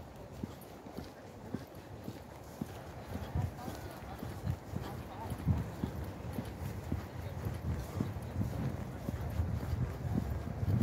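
Footsteps on an asphalt path, about two steps a second, from someone walking at a steady pace. A low rumble grows louder in the second half.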